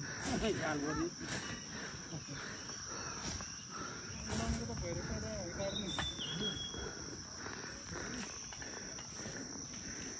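Insects keep up a steady high-pitched drone, with faint voices of people talking at a distance and a few sharp knocks.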